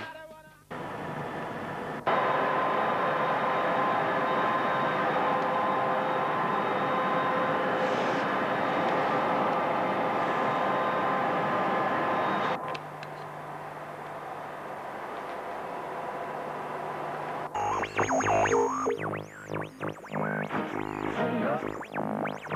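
London Underground train running: a steady rushing rail noise with a faint steady hum. It is loud from about two seconds in and drops sharply a little past halfway. Electronic synth music comes in near the end.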